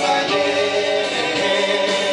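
A live band playing a song with acoustic guitars, with voices singing together over it.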